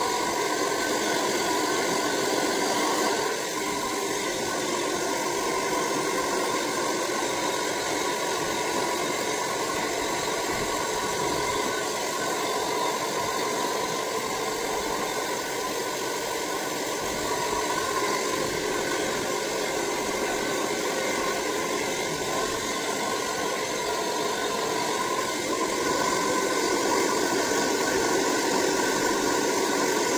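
Handheld hair dryer running steadily, an even noise of blown air, a little quieter from about three seconds in until near the end.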